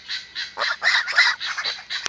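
Guinea fowl alarm-calling: a rapid run of short, harsh, scratchy calls, about five a second. It is the flock's warning that something has disturbed them.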